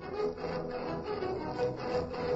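Orchestral music led by bowed strings, moving in a quick, even pulse of about four beats a second.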